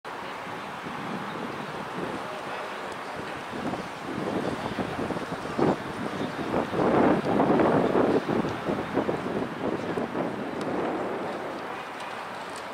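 Wind buffeting the microphone: an uneven, rough noise that gusts louder for a few seconds around the middle.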